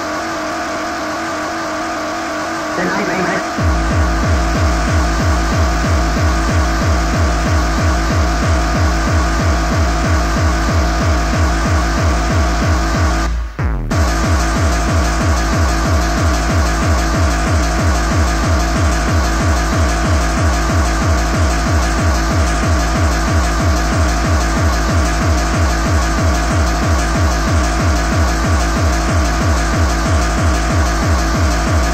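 Hardcore techno (gabba) from a 1994 DJ mix tape: a dense synth layer, then a fast, steady kick drum comes in a few seconds in and drives on. The sound drops out for a split second about halfway through.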